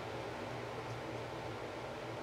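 Quiet, steady room tone: an even hiss with a faint low hum, and no distinct event.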